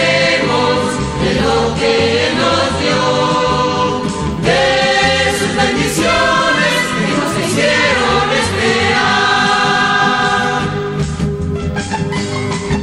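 A church vocal ensemble sings a Christian song in chorus over steady instrumental accompaniment. Near the end the voices drop out, leaving the instruments playing on.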